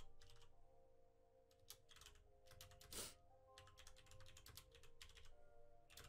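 Faint typing on a computer keyboard in short runs of keystrokes, over quiet background music.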